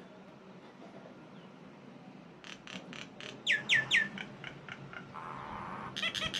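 Common myna calling: a run of short clicking notes, then three quick downward-sliding whistles in a row, more clicks, and a brief rasp near the end.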